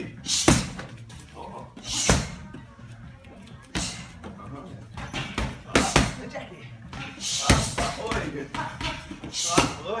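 Kicks and punches smacking against a trainer's Thai pads and belly pad in Muay Thai padwork: sharp slaps about a second or two apart, some with a hissing exhale from the fighter on the strike.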